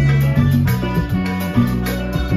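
Live Latin band playing an instrumental passage: a loud, moving electric bass line over drum kit and Nord Stage keyboard.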